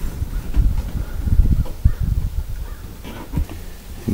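Low, irregular thumping and rumble of handling noise and wind on a hand-held camera's microphone.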